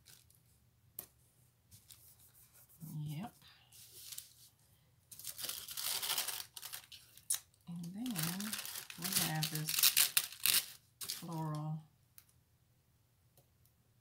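Paper sheets crinkling and rustling with tearing-like sounds as planner pages and sticker sheets are handled and stickers peeled, in two spells from about five to eleven seconds in.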